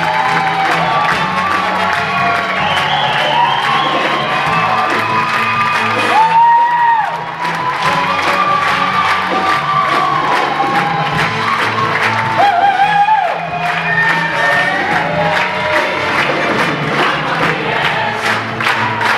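Show choir singing with a live backing band with horns, and the audience cheering and whooping over the music. Twice, about six and twelve seconds in, the band's low end drops out for under a second under a single held high note.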